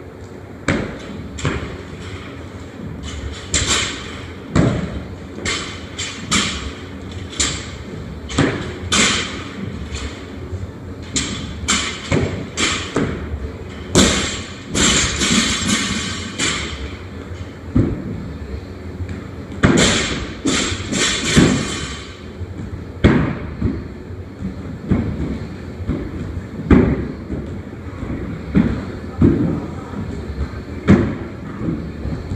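Repeated thuds, roughly one a second, of feet landing on wooden plyo boxes during a box-jump set, mixed with knocks from a loaded barbell. There are two longer stretches of rattling noise about halfway through.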